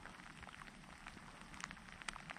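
Faint light rain: a soft, steady hiss with scattered single drops ticking irregularly.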